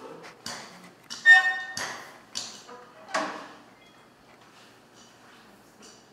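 Hand ink roller (brayer) being rolled across an inked printing plate: a few short strokes in the first three seconds or so, the loudest about a second in with a brief ringing tone, then quieter.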